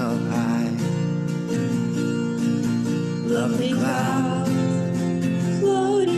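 A recorded song playing: acoustic guitar chords under a sung melody, with the voice entering at the start and again about three and a half seconds in.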